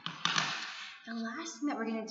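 A woman laughing breathlessly: a loud breathy burst in the first second, then voiced laughter.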